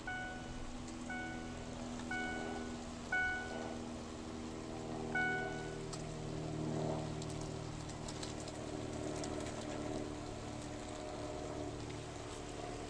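Car engine running steadily at low speed, heard from inside the car as it rolls slowly along. Over the first half come five short electronic beeps, about one a second, the last after a brief gap.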